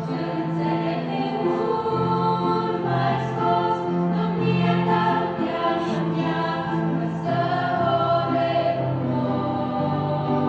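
A girls' choir singing a Christmas hymn in harmony, in long held notes that change every second or so.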